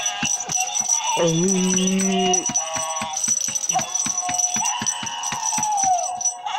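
Gemmy animated plush baby goat toy playing its song: a melody over a fast, even rattling beat of about five strokes a second.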